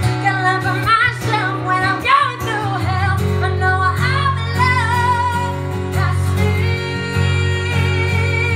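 A woman singing live with a strummed acoustic guitar accompaniment. Her voice bends and runs through the first half, then settles onto a long held note near the end.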